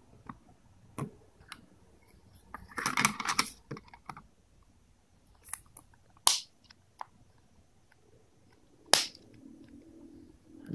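Small plastic clicks and scuffs as the battery is pressed into a ZTE pocket Wi-Fi router and its plastic back cover is snapped shut. There is a cluster of scraping clicks about three seconds in and single sharp snaps near six and nine seconds.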